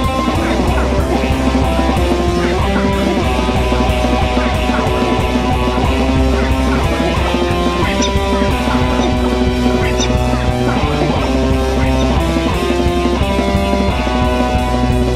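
Instrumental alternative rock: electric guitar notes played through effects pedals over a steady beat.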